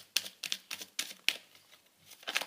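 A deck of tarot cards being shuffled by hand: a quick, uneven run of clicks as the cards slap together, stopping shortly before the end.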